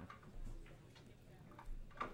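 A few faint, scattered clicks of pool balls striking each other on nearby tables, over a low steady room hum.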